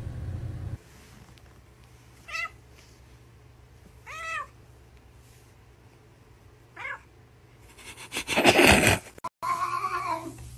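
A cat meowing three times, short meows a couple of seconds apart, the middle one longest and arching in pitch. Near the end comes a loud noisy burst, then another cat starts a loud meow.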